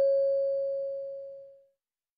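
A single bell-like chime tone in a listening-exam recording, dying away smoothly and gone well before the end; it marks the break between the end of the dialogue and the repeated question.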